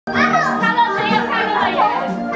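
Music with steady sustained notes, with young children's voices over it, talking and calling out. It starts abruptly at the very beginning.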